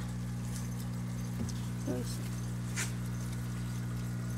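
A steady low hum, with a few faint rustles and light taps as plant leaves are handled, and a brief faint murmur of a voice about two seconds in.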